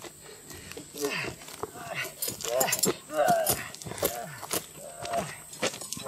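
Indistinct voices of a group of people calling out and chattering, with no clear words, mixed with a few scattered sharp clicks.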